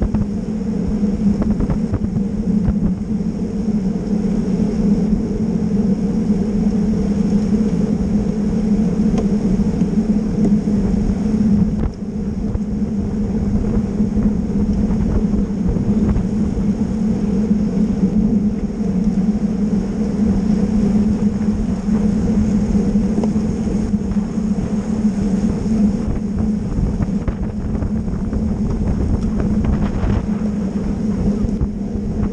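Steady wind rush and low rumble on the microphone of a bike-mounted camera riding at race speed in a pack of road bikes.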